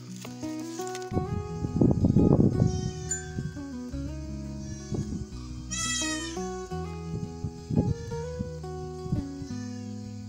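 A young miniature goat bleats once, a short high wavering call about six seconds in, over background music with held notes. A loud, low rustling burst comes about two seconds in.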